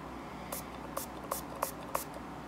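Perfume atomizer spray bottle pumped five times in quick succession, each press a short hiss of mist.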